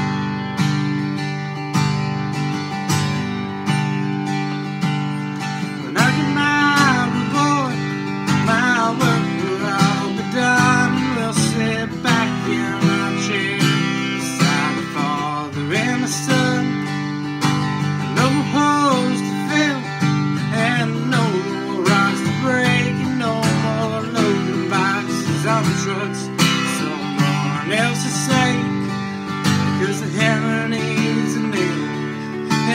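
Acoustic guitar strumming steady chords in an instrumental break of a country-folk song. About six seconds in, a bending lead melody enters over the chords.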